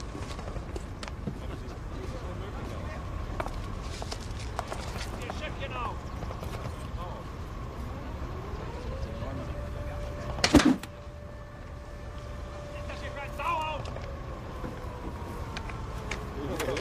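A car engine idling with a steady low rumble, and one sudden loud knock about ten and a half seconds in.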